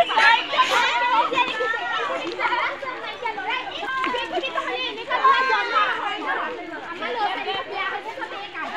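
Chatter of many overlapping voices, women and girls talking at once in a walking group, with no single voice standing out.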